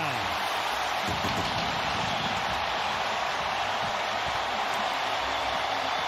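Stadium crowd cheering a home-team touchdown, a steady unbroken roar.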